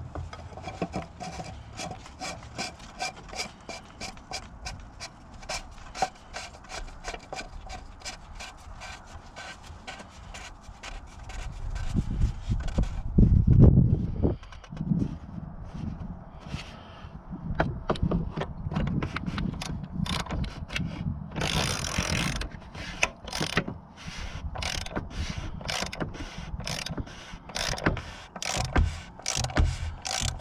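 The plastic oil filter housing cap is threaded back onto the engine by hand, with rubbing and a string of clicks a few times a second. A loud low thump and rumble comes about halfway through. Near the end, a socket ratchet clicks rapidly as the cap is tightened down.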